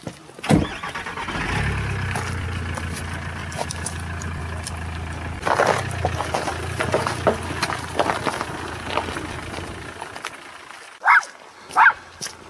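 Volkswagen Sharan minivan's engine idling steadily after a sharp knock about half a second in, the hum fading away near the end. Two short high calls follow.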